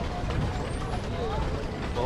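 A steady low rumble of wind and water noise on a pedal boat on a lake, with a voice talking faintly over it.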